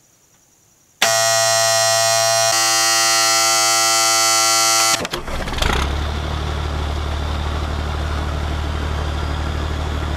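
M35A2 deuce-and-a-half truck starting: a loud, steady warning buzzer sounds for about four seconds, the dash's signal for low air-system pressure. Then, about five seconds in, the engine catches and settles into a steady, low idle.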